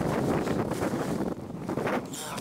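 Wind buffeting the camera microphone, a low rumbling noise that eases a little in the second half.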